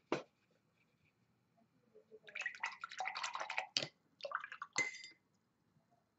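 Watercolor brush swished and rinsed in a glass jar of water, a quiet sloshing that lasts about three seconds, ending in a short clink.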